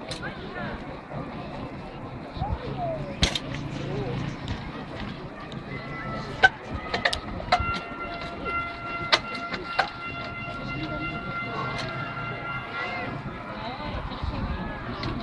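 A trials bike's tyres and frame knocking sharply on rock as it hops and lands on boulders, scattered single impacts over a low murmur of voices. In the second half a steady high tone holds for several seconds.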